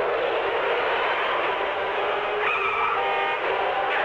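Horror film trailer soundtrack: a steady, dense rushing noise, thin and muffled like an old tape, with a brief high tone and a few short higher tones in the second half.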